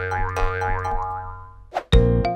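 Playful cartoon title jingle: bouncy music with springy, wobbling boing-like notes over a steady bass, fading out near the end.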